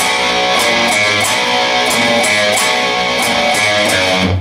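Electric guitar with a dense, full sound playing a rhythmic riff that was just called out: power chords on the A and D strings at the 3rd, 5th and 2nd frets, including a flatted power chord, then the open A string struck repeatedly.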